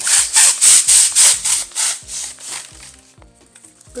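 Hand balloon pump being worked quickly to inflate a foil heart balloon through its valve: about ten hissing air strokes, some four a second, growing weaker and stopping a little under three seconds in as the balloon fills.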